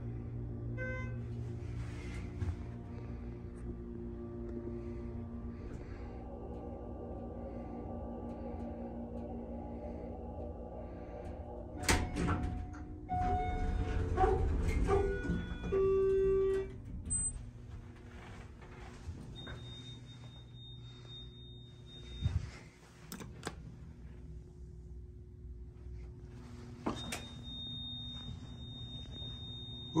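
Dover Impulse hydraulic elevator, modernized by Schindler, travelling up with a steady hum of its drive, which stops with a knock about twelve seconds in. A run of short electronic tones follows as the car arrives and the doors slide open, and later a high steady beep sounds twice, the second time running on to the end.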